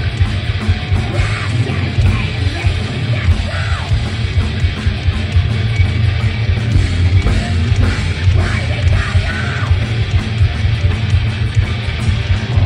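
Thrash metal band playing live through a club PA: fast, dense drums, heavy distorted guitars and bass, with a singer shouting vocals over them in several phrases.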